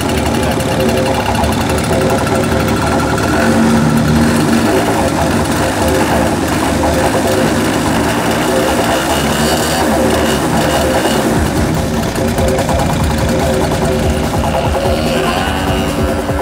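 DLE55 single-cylinder two-stroke petrol engine of a large RC aerobatic plane running on the ground, mixed with background music.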